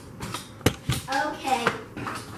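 Two sharp knocks, about a quarter of a second apart, followed by a brief stretch of a voice speaking off to the side.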